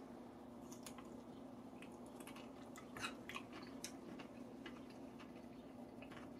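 A person chewing a bite of pickle wedge with dentures: faint, scattered crunches and wet clicks, loudest about three seconds in.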